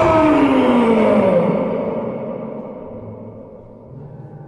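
A man's drawn-out "O-o-o" howl, an attempt to trumpet like a rhinoceros, sliding down in pitch and dying away over about two seconds. A held musical chord fades with it.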